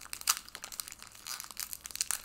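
Foil wrapper of a Pokémon card booster pack crinkling as it is handled, an irregular run of small crackles.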